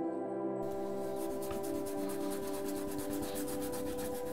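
Rapid back-and-forth rubbing strokes on paper, starting about half a second in, over soft ambient music with long sustained tones.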